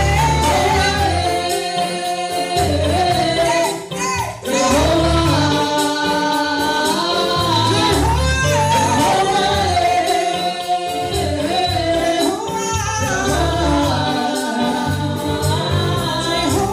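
A gospel praise team of several voices, women and a man, sings into microphones over an instrumental backing with a low bass line. The singing carries on with only a brief dip about four seconds in.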